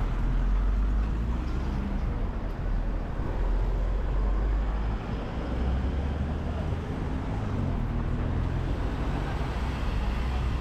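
Street traffic: car engines running close by, a steady low rumble under the general noise of a busy city street.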